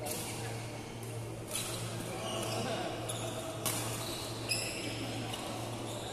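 Badminton rackets striking a shuttlecock in a doubles rally: four sharp hits, the first right at the start, then about a second and a half, two seconds and under a second apart. A steady low hum runs underneath.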